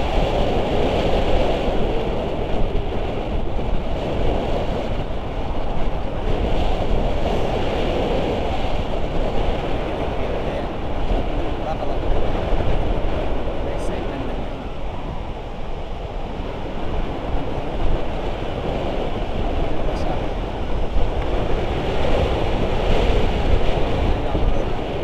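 Wind rushing over the microphone of an action camera during a tandem paraglider flight: a loud, steady roar of wind noise that swells and eases every few seconds.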